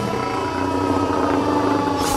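Film soundtrack: a deep steady rumble under long held tones, the highest of them slowly sinking in pitch.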